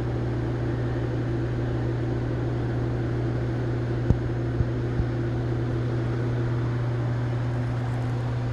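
A steady low machine hum, with three light clicks about four to five seconds in.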